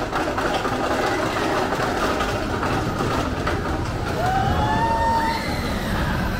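Small family roller coaster train running along its steel track, a steady rumble of wheels that builds as the train comes close. A high gliding tone rises over it about four seconds in.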